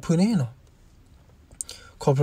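A man narrating a story in Karen: a short phrase with rising-and-falling pitch at the start, then a pause of about a second and a half with a faint click near the end.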